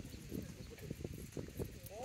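Faint voices of people talking some way off, with scattered light knocks.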